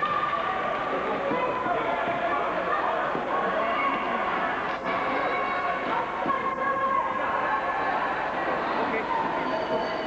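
Steady din of an indoor ice rink during a youth hockey game, with indistinct spectator chatter echoing in the hall and faint held tones running through it.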